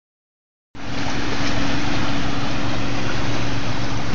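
Steady running of a small engine, most likely the gold suction dredge across the river, a constant low drone under a rushing hiss of moving water. It starts abruptly about three quarters of a second in.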